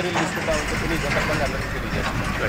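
A man talking outdoors over a low, steady rumble of road traffic that comes in about half a second in.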